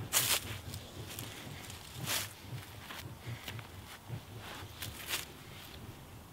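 Soft swishes of two kali sticks swung through the air in a sinawali weave, mixed with the rustle of feet shifting on dry leaves. The strongest swishes come near the start, about two seconds in and about five seconds in.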